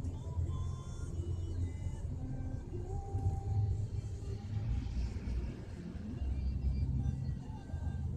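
Low, steady rumble of a moving car heard from inside the cabin, with background music playing over it.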